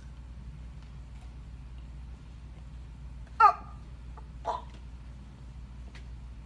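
A child's short wordless vocal sounds over a steady low room hum: a sharp, loud one about three and a half seconds in and a fainter one about a second later.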